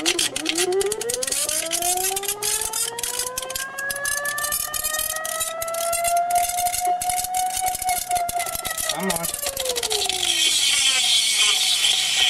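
Rodin-coil double-pulse motor spinning a steel ball inside a plastic tube, with a fast rattling clatter. Its whine rises in pitch over the first six seconds, holds, then falls away about ten seconds in, leaving a hissing rattle.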